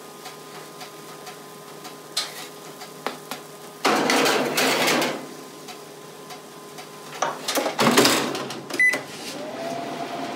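Metal baking tray scraped along the racks of a Rinnai gas oven, then a clatter as the oven door is shut. A short beep follows, and a hum rises and settles into a steady tone near the end as the oven starts running again.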